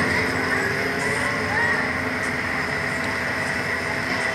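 Steady rushing noise from the Slingshot ride capsule as it hangs and sways, with faint music underneath.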